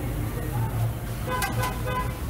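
A vehicle horn tooting two or three short times about one and a half seconds in, over a steady low hum.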